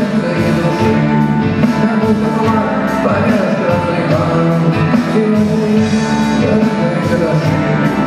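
Live rock band playing at a steady loud level: electric guitar, keyboards and drums, amplified through the PA and picked up from the audience.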